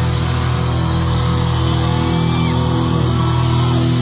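Post-hardcore rock band playing live in a concert hall, heard from among the crowd: loud distorted guitars and bass on long held chords.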